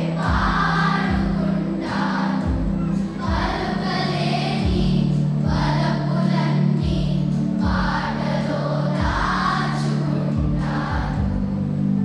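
A children's choir sings over a musical accompaniment with sustained low notes and a regular beat.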